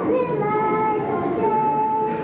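A young girl singing solo, holding long, steady notes.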